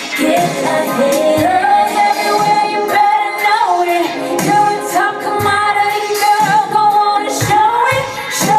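A woman singing into a microphone over amplified backing music, holding two long, steady notes in the middle of the stretch.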